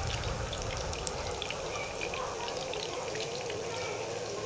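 Battered chicken pieces sizzling in hot oil in a frying pan, with many small scattered crackles.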